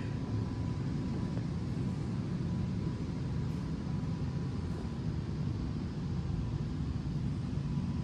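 Steady low rumble of indoor background noise in a large hall, with a faint steady high tone through the first half that fades out about four seconds in.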